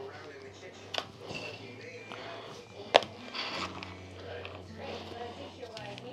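A plastic spoon scooping rice in a plastic food container, with a sharp click about a second in and a louder, sharper click about three seconds in as it knocks the tub. Quiet talking runs underneath.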